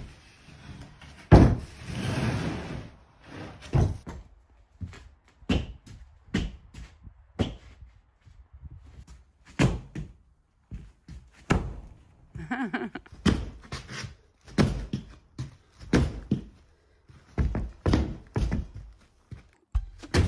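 Irregular knocks and thumps, roughly one a second, with a short scraping rush near the start, typical of wooden floor boards being handled and knocked into place.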